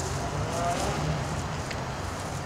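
Burning snake fire poi whooshing as they are swung through the air: a continuous rushing noise with uneven swells.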